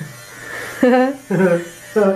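Handheld electric fabric shaver (lint and pill remover) buzzing steadily as it is run over sweatpants fabric, shaving off pills.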